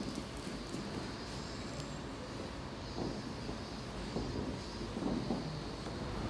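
Steady low background noise of a room full of people, with a few soft knocks about three, four and five seconds in.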